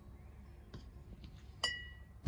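A metal spoon clinks once against a glass measuring jug about a second and a half in, with a brief bright ring; a few faint taps come before it.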